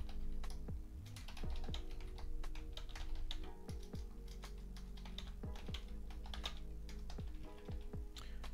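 Computer keyboard typing in quick, irregular clicks, with quiet background music underneath.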